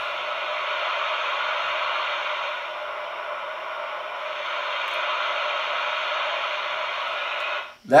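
Receiver static from a Realistic TRC-474 CB radio's speaker, turned up loud, a steady hiss whose tone shifts as the radio's tone control knob is turned. It dips a little in the middle and cuts off suddenly near the end.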